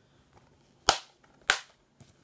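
Plastic DVD case being snapped shut: two sharp plastic clicks a little over half a second apart.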